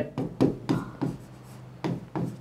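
Pen stylus writing on an interactive smart-board screen: about five short strokes in two seconds as the letters are drawn.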